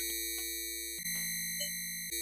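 Synthesized electronic tones from a Max 8 modular patch: steady stacked pitches that jump abruptly to a new set about once a second, with short clicks in between.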